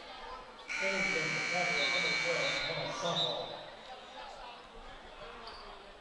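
Gymnasium scoreboard horn sounding one harsh buzz, about two seconds long, starting about a second in and cutting off suddenly: the signal that a timeout is over. Crowd chatter runs underneath.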